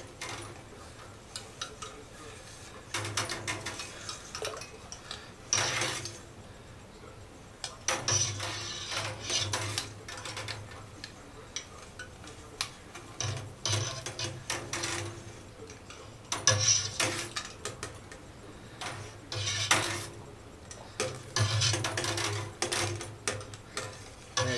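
Long metal stirring rod clanking and scraping against the inside of a stainless steel pot in irregular bursts as cheese curds are stirred in the whey during cooking.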